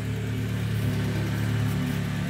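Saab 9-3 convertible's engine idling with a steady, even hum.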